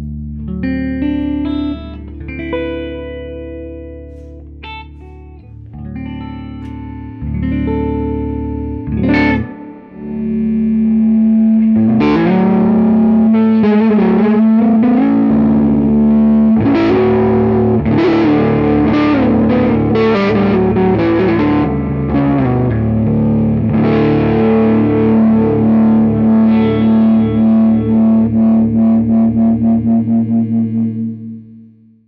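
Heritage H-530 hollow-body electric guitar with Lollar P90 pickups, both pickups on, played through an amp. For about ten seconds it plays separate picked notes and chords, then breaks into a loud, distorted passage with a long held note. Near the end the sound pulses evenly, about two or three times a second, and fades out.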